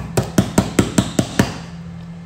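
Rapid, even tapping, about five sharp taps a second, stopping about one and a half seconds in.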